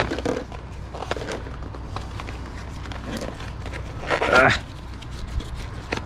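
Light rustling and scattered soft clicks of a small cardboard box and its contents being handled and opened by gloved hands.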